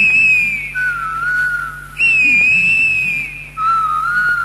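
A high, whistle-like melody of long held notes that waver a little and sag slightly in pitch, alternating between a high note and one about an octave lower, twice over. A faint steady low hum runs beneath.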